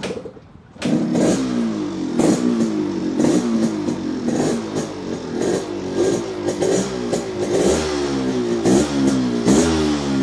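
Yamaha RXZ 135's single-cylinder two-stroke engine starting about a second in, then being revved repeatedly, the throttle blipped about once a second with each rev falling back toward idle.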